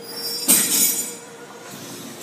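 A short, sharp metallic screech of gym equipment, metal scraping on metal for about half a second, starting about halfway through.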